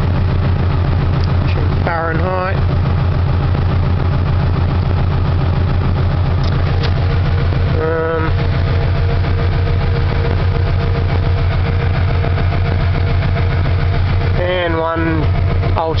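Swapped-in Subaru EJ flat-four engine idling steadily at about 900 rpm with the air-conditioning compressor engaged, heard from inside the cabin over the steady rush of the A/C blower.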